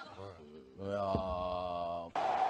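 A man's voice, faint and brief at first, then holding one steady low note for about a second, like a drawn-out hum.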